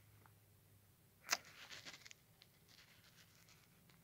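Mostly near silence, with a phone being handled: a single sharp tap or click about a second in, then faint rustling. The screen moves from the quick-settings panel to the Audio settings page, so the click is a finger on the touchscreen.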